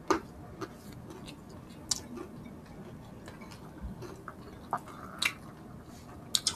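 Close-up chewing of crispy fried pork and rice, with a few short, sharp crunches, the loudest right at the start.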